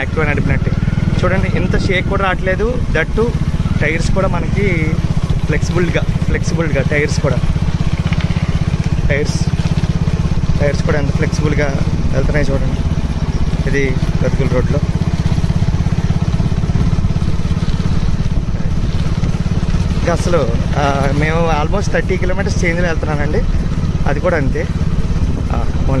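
People talking over a steady low rumble of wind and road noise from a moving vehicle.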